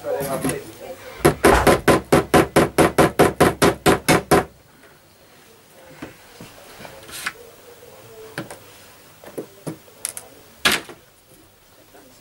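Small hammer tapping tiny track pins through model railway track into the baseboard: a quick, even run of about fifteen taps, then a few single taps with pauses between them, the loudest near the end.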